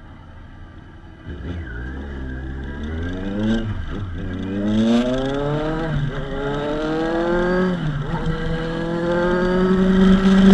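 Kawasaki Ninja 1000's inline-four engine pulling away from low revs and accelerating through the gears. The pitch climbs, drops at an upshift about four seconds in, climbs again, drops at a second upshift near eight seconds, then holds steady. The engine grows louder as speed builds.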